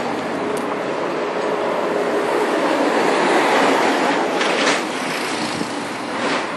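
Street traffic noise: a steady rush of passing vehicles that swells as one goes by in the middle and drops away just before five seconds in.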